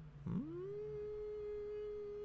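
A man humming a drawn-out 'hmm' with closed lips: the pitch slides up quickly, then holds steady for about two seconds.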